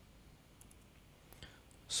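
A few faint, sharp clicks of laptop keys over a quiet room, with a man's voice starting right at the end.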